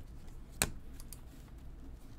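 A stack of baseball cards being flipped through by hand, with one sharp click about half a second in and a few fainter ticks soon after, over a low steady hum.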